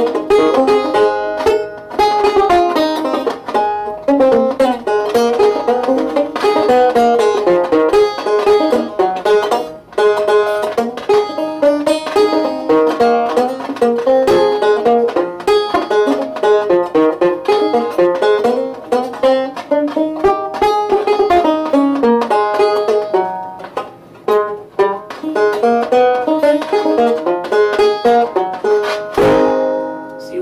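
Five-string Tubaphone banjo with steel strings played hard in bluegrass-style picking: a fast, continuous stream of picked notes with brief breaks about ten seconds in and again near twenty-four seconds, ending on a last struck chord. The fifth string is held by a clothespin capo on its smallest setting, which stays in place through the playing.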